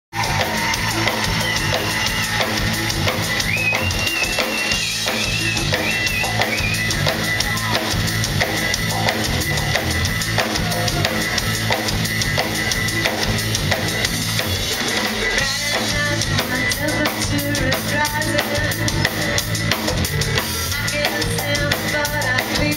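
Live band music: a drum kit keeping a steady beat with bass drum and snare under a low bass line and keyboards, with a high held melody line in the first few seconds.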